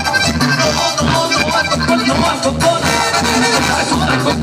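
Live Mexican banda music: a brass band playing, with horns over a tuba bass line and a steady beat.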